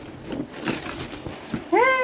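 Faint rustling and crinkling of plastic bubble wrap and taped parcel packaging being handled, with a few small clicks. Near the end, a loud, drawn-out exclamation of 'hey' cuts in.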